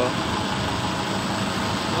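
Diesel engine of a rear-engined intercity coach idling steadily, an even low hum.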